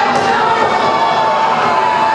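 Wrestling crowd shouting and cheering at ringside, with a steady high tone running underneath throughout.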